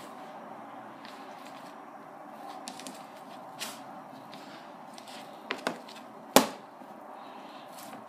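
Hands mixing and kneading sticky wholemeal dough in a silicone bowl: soft, faint handling sounds over a steady background hiss. A few short clicks break in, the loudest a single sharp knock a little past six seconds in.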